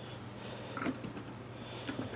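Faint handling of a cardboard product box turned over in the hands: soft scuffs and a light tick near the end, over a low steady hum.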